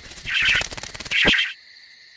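Croaky, rattling cartoon creature noises from a morphing werewolf-vampire character, with two louder bursts about a second apart, then quieter.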